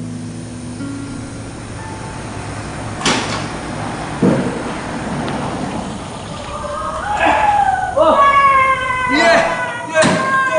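A car pulling up slowly, with a low steady engine and tyre noise, a click about three seconds in and a thump a second later. In the last few seconds excited voices call out and laugh, louder than the car.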